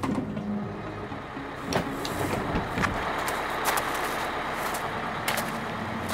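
Bus sound effect: a sharp clack at the start, then the steady noise of the bus idling, with a few scattered clicks.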